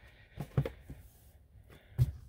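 A few soft taps and light rustles of small cardboard product boxes being handled and set down on a rubber mat, bunched about half a second to a second in, otherwise quiet.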